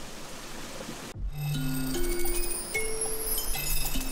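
A steady outdoor hiss for about a second, then background music cuts in: a gentle tune of held notes stepping upward, with bright chime-like tones above.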